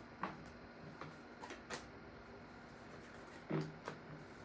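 Tarot cards being handled: a deck shuffled in the hands and cards laid on the table, giving a handful of short card snaps and taps, the loudest a little before the end.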